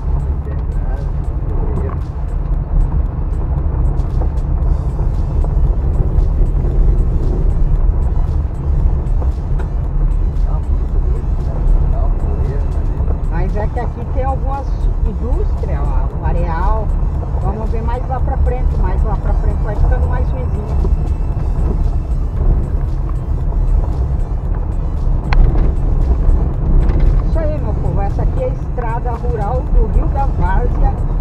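Steady low rumble of a car's tyres and engine on a gravel road, heard from inside the cabin. Music with a singing voice comes in over it about halfway through and again near the end.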